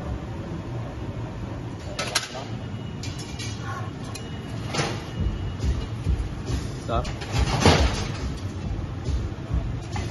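Steady low roar of a glassblowing studio's furnace and glory-hole burners, with a few sharp taps of metal tools on the blowpipe, the loudest about three-quarters of the way through.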